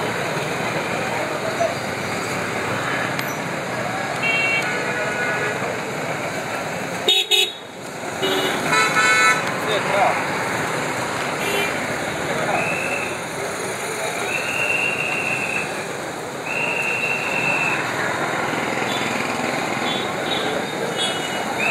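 Busy street din of crowd chatter and traffic, with vehicle horns honking again and again; in the second half come three long steady horn blasts of about a second each.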